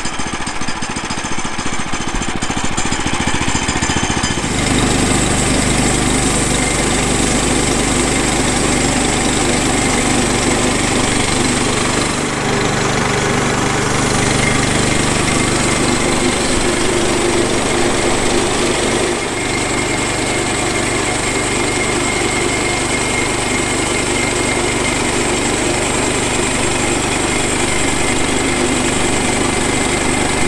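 Small gasoline engine of a Woodland Mills HM122 portable bandsaw mill running steadily under load while its band blade saws through an eastern red cedar log. The sound is rougher for the first few seconds, then settles into an even drone, with two brief dips in level about midway.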